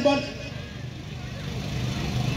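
The last word of a man's shouted command, then a steady low mechanical hum like an engine running, under faint outdoor background noise.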